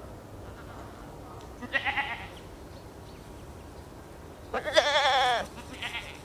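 Goats bleating: a short bleat about two seconds in, then a louder, longer bleat with a quavering pitch near the end, followed by a brief bleat.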